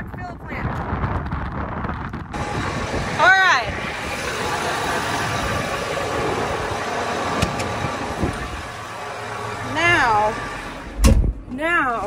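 A tractor engine running steadily. Near the end comes a single heavy thump as the cab door shuts.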